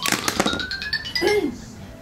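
An alarm ringtone playing a fast run of short, high chiming notes over a slowly rising tone. It is a reminder alarm signalling that it is time to get ready to go on air.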